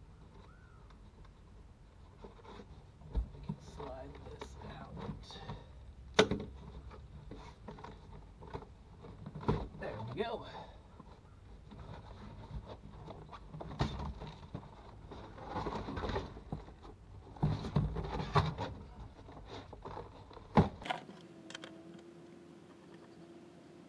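A half-inch wrench and other metal hand tools clinking, knocking and scraping as a bolt in a VW Beetle's interior is worked loose. The sharp knocks are scattered and there are bursts of rattling. Near the end the sound cuts to a steady low hum.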